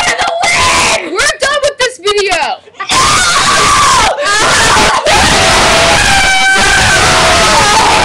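Several girls screaming and shrieking with laughter close to a webcam microphone. Short choppy shrieks come first, then from about three seconds in the screaming is continuous and loud.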